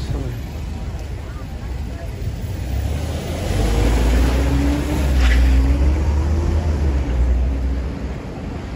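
Street traffic rumble with a vehicle passing; the low rumble swells for a few seconds in the middle as an engine note rises and falls, over the murmur of voices from passers-by.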